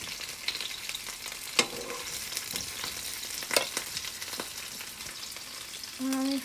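Cauliflower florets frying in hot oil with a steady sizzle, while a spatula turns them, clicking sharply against the pan twice.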